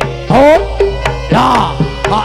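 Loud percussion-led music with hand drums and held tones, accompanying pencak silat. Over it come shouted calls of "hey" and "oh", each rising and falling in pitch, about once a second.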